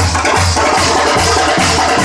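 Loud Teenmaar music, the Telangana folk drum rhythm, with a steady heavy beat and dense percussion.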